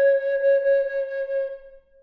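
A single long note on a Native American flute, held steady and fading away near the end.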